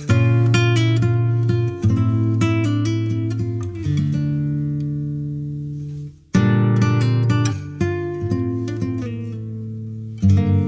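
Instrumental music: a plucked string instrument plays a slow melody over long, ringing low notes, each phrase struck and then fading away. There is a brief break about six seconds in, and then a new phrase begins.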